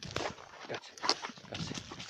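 A setter dog close to the microphone, panting and moving, heard as irregular short puffs and clicks.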